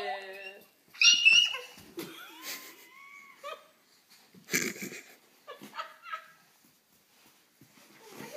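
A toddler's high-pitched squeals and excited vocal sounds: a loud sharp squeal about a second in, then a drawn-out cry that rises and falls, with softer sounds after and a quiet stretch near the end.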